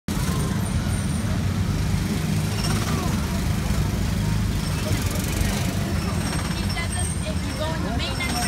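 Steady low rumble of Disneyland Autopia ride cars' small gasoline engines as the cars are driven slowly along the track.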